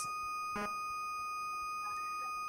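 A steady, high electronic tone with several thin overtones, held without change. It sounds like interference or a whine on the broadcast audio line. About half a second in, a voice briefly says 'I'.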